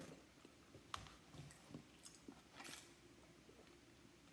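Near silence with faint chewing: a few soft mouth clicks and a brief soft rustle, all very quiet.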